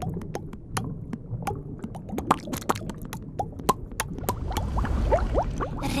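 Cartoon bubble sound effects: a rapid, irregular run of small bubble pops and short rising blips, the fish 'talking' in bubbles. A soft fizzing hiss builds in the last second or so.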